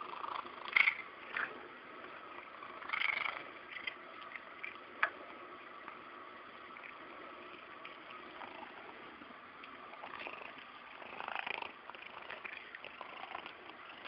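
Domestic cat eating pieces of chicken from a hand: soft, intermittent chewing and mouth sounds, a few short clusters of them.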